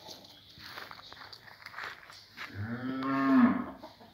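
A cow mooing once: a single long, loud call starting about two and a half seconds in, low at first, then higher, and falling away at the end, after light rustling.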